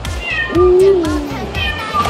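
Cat meowing over background music with a steady beat: a long meow about half a second in that falls in pitch at its end, with shorter high mews around it.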